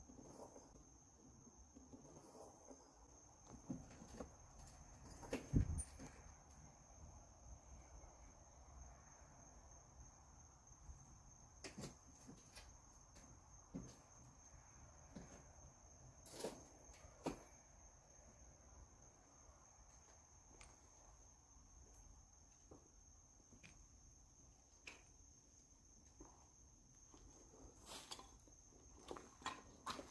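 Near silence, broken by a few scattered footsteps and knocks on a debris-littered floor, the loudest about five and a half seconds in, with a faint steady high-pitched tone throughout.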